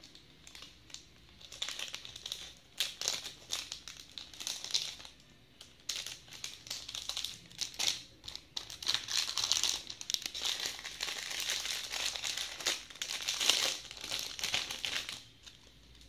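Clear plastic jewellery packaging crinkling as it is handled, in irregular bursts of rustling and crackling. It is busiest in the second half and stops about a second before the end.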